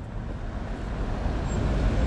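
City street traffic: a motor vehicle's engine and tyre noise, a low rumble that grows steadily louder as it approaches.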